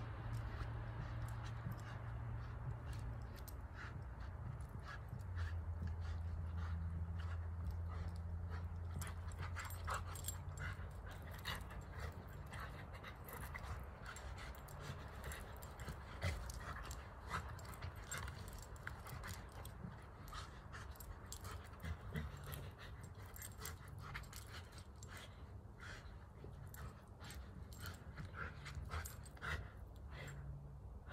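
A dog's sounds outdoors, over a low steady hum that changes pitch about five seconds in, with many scattered faint clicks.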